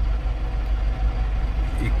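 Steady low rumble of a Nissan Kicks heard from inside the cabin in slow, heavy traffic: engine and road noise.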